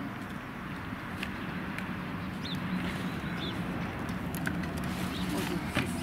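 Water from a street hand pump running into a red plastic bucket, a steady rush, with short high bird chirps over it and a few sharp knocks near the end as the bucket is handled.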